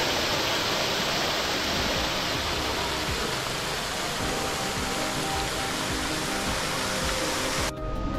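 Ornamental fountain's water jets splashing down into the basin: a steady rush of falling water that cuts off suddenly near the end.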